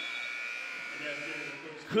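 Basketball scoreboard buzzer sounding the end of the first quarter: one steady electric buzz that fades out about a second and a half in.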